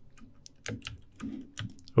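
Computer keyboard keys being pressed: a quick scatter of separate clicks.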